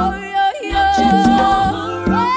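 Vocal group singing in close harmony, with long held notes over a low bass line and a brief dip in the sound about half a second in.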